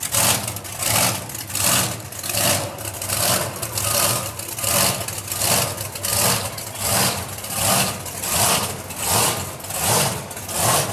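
A large engine idling, with a loud hissing whoosh that repeats evenly about every three quarters of a second.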